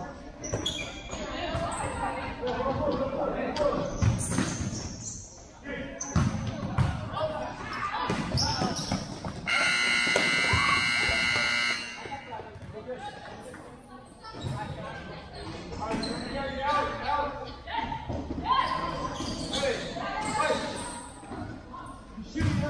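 Futsal ball kicks and bounces echoing in a large indoor hall, with players calling out. A scoreboard buzzer sounds once, for about two seconds, near the middle.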